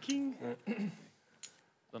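A short stretch of low voices, then a near-silent pause broken by a single sharp click about a second and a half in.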